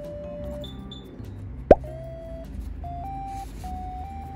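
Light background music: a simple melody of held notes stepping between pitches, with one short, sharp rising blip, the loudest sound, a little before the middle.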